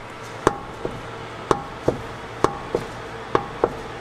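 A badly worn front ball joint on a truck clunks as the tyre is rocked back and forth by hand. There are about two metallic knocks a second, louder ones with a short ringing tail alternating with softer ones. The joint has far more play than it should and is close to snapping in half.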